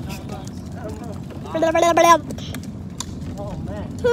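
Hard plastic wheels of a push-along toddler ride-on car rolling over asphalt, a steady rumble with small knocks. A child's high voice calls out briefly about halfway through.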